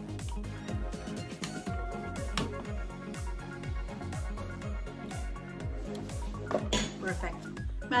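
Metal utensils clinking and scraping against a stainless steel pot as potatoes are stirred and mashed, with short sharp clinks. Background music with a bass beat about twice a second plays throughout.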